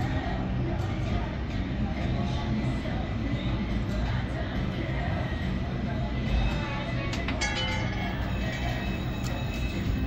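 Roulette ball rolling around the enclosed wheel of an Interblock automated roulette table, with a rattle of clicks about seven seconds in as it drops and bounces among the number pockets. Casino background music and chatter run underneath.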